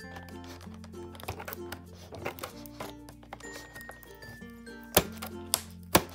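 Light background music, with scissors snipping through packing tape on a cardboard toy box: small clicks throughout and two sharp snips near the end.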